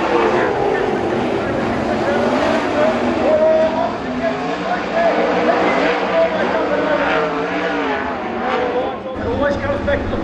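A pack of winged sprint cars racing on a dirt oval, their V8 engines running hard together with pitches that rise and fall as the drivers get on and off the throttle.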